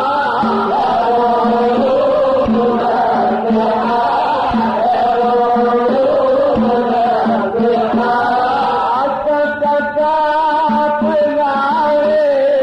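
A male munshid singing an Arabic devotional nasheed in the Aleppine style, with long, gliding vocal lines over a steady low held tone.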